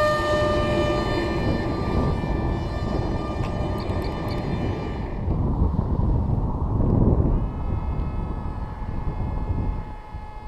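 Electric motor and propeller of a foam RC park jet whining steadily, fading about five seconds in and coming back at a higher pitch a couple of seconds later. Heavy wind rumble on the microphone runs underneath.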